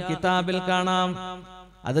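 A man's voice chanting in a drawn-out, melodic way through a microphone, holding long steady notes. It falls away briefly about three-quarters through and picks up again at the end.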